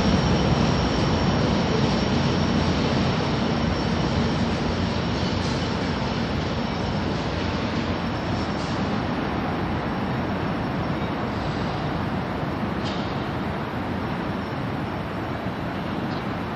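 Amtrak Capitol Corridor passenger train with its EMD F59PHI diesel locomotive rumbling away after passing. The noise slowly fades, with a faint high steady tone above it.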